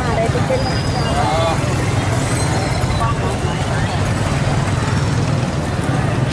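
Outdoor street noise on a phone microphone: a steady low rumble, with men's voices calling out in the first second or so, around a column of riot police on the move.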